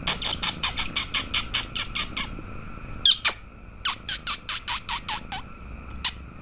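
Rapid squeaky kissing noises made through pursed lips to a kitten, several a second, in two quick runs with two louder squeaks between them about three seconds in.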